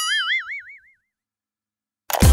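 Cartoon 'boing' sound effect: a single wavering, warbling tone that glides slightly upward and fades out within about a second, followed by silence.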